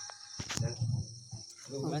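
A pause after tabla and devotional singing: a steady high cricket trill under a few scattered voices, with a man's voice starting to chant near the end.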